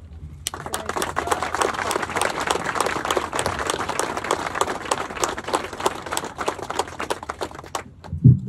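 Audience applauding. It starts about half a second in and stops suddenly just before the end.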